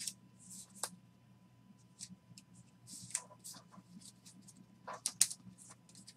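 Trading cards in plastic sleeves and top loaders being handled and sorted: faint rustling and a scatter of short plastic clicks and swishes, a few sharper ones about five seconds in.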